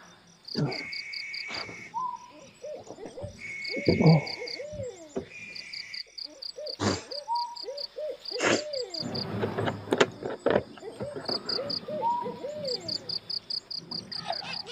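Night-time chorus of wild animals: a fast, evenly pulsed high insect trill that stops and starts, longer buzzing insect calls, and many short, low, rising-and-falling animal calls. A few sharp knocks and clatter come from a cup and bottle being handled close by.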